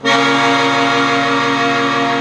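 Organetto (diatonic button accordion) sounding one sustained chord, starting abruptly and held steady as the bellows are drawn open.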